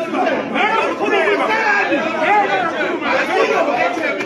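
Many voices talking over one another in a large hall: the crowd noise of angry councillors in a confrontation.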